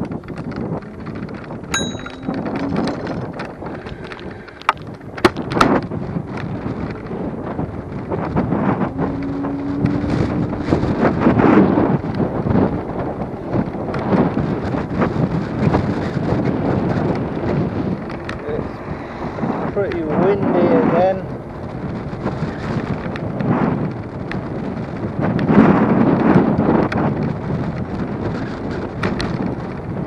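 Wind gusting on the microphone of a camera riding on a moving electric scooter, a loud, uneven rumble that rises and falls. A brief high ding comes about two seconds in, and a few sharp knocks about five seconds in.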